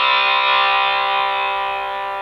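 Electric guitar two-note chord, fretted on the 4th and 3rd strings at the 5th fret, held and ringing out with a slow fade.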